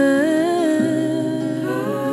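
Folk song: a woman's voice holds a wordless, hummed note, stepping up in pitch about a quarter second in and again near the end, over soft sustained accompaniment.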